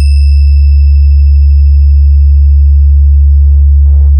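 Sustained, very loud synthesized sub-bass tone from a DJ vibration sound-check track, a deep steady hum held without a break, with a faint thin high whine above it. Near the end, two short hissing beat hits come in over the bass.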